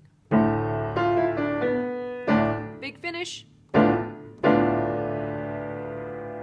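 Piano playing a slow run of chords, each struck and left to ring. The last chord is held and fades away.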